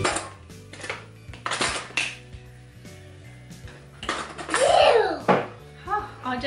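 Metal forks and spoons clinking as they are dropped one at a time into a plastic cutlery drawer organizer, several separate clinks, with quiet background music. About four seconds in comes a louder, drawn-out sound whose pitch sweeps down and back up.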